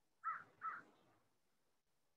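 Two short bird calls in quick succession, about half a second apart.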